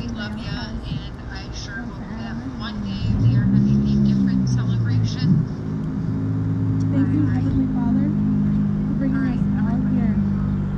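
A motor vehicle's engine running close by, coming in loud about three seconds in and then holding a steady, low pitch, over distant speech from a PA speaker.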